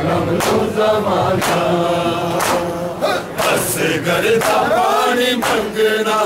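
Male noha reciter singing a Shia mourning lament into a microphone, with a crowd of men chanting along. Sharp strikes of chest-beating (matam) keep a beat about once a second.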